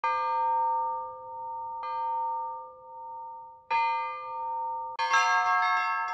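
A church bell struck three times, about two seconds apart, each stroke ringing on with a slow waver as it fades. About a second before the end, several smaller bells join in quick overlapping strokes, a peal of chiming.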